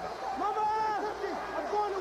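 A man's voice talking, with the stadium crowd faintly behind it.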